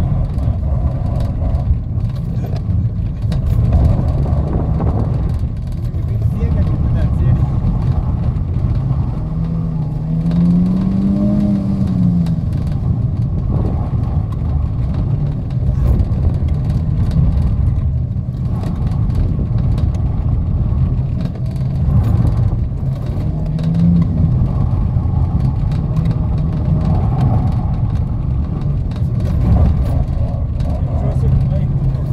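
Renault Clio's engine heard from inside the cabin, held in first gear and revving up and down as the car weaves through a tight slalom.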